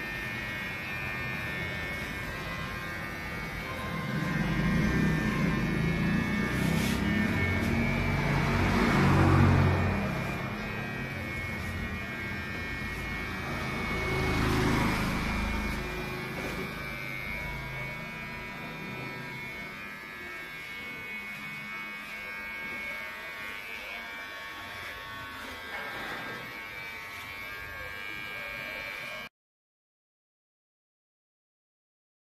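Corded electric hair clipper buzzing steadily as it cuts a child's hair, with two louder, lower-pitched stretches in the first half. The sound cuts off suddenly near the end.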